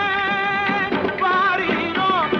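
An old 1958 Tamil film song: a singer holds a long, wavering note, then sings a short ornamented phrase over the instrumental accompaniment.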